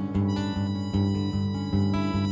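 Harmonica playing held notes over a steadily strummed acoustic guitar.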